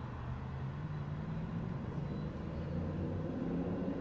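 A motor vehicle's engine idling, a low steady hum whose pitch creeps up slightly.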